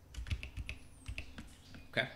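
Computer keyboard being typed on: a run of quick, separate key clicks, about four or five a second.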